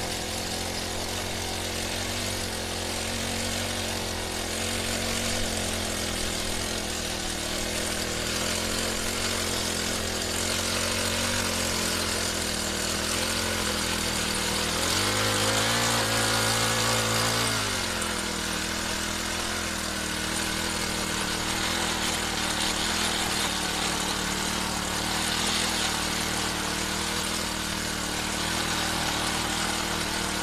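Small petrol engine of a mini motor-cultivator running steadily as its tines till soil. About halfway through the revs rise for two or three seconds, then settle back.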